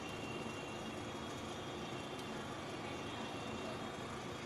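Steady background noise, even in level, with no distinct knocks, taps or scrapes standing out.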